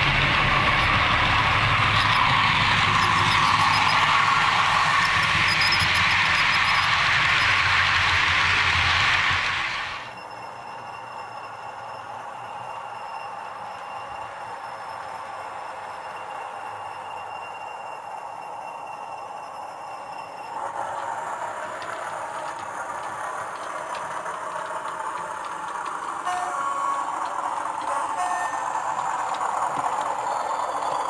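OO gauge model trains running on layout track, with motor hum and wheel noise. The noise is loud for the first ten seconds as a train runs close by, then drops suddenly to quieter running sound, and steps up again in the last third as another locomotive approaches.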